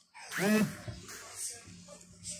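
A person's brief wordless vocal sound about half a second in, its pitch rising then falling, followed by faint room background.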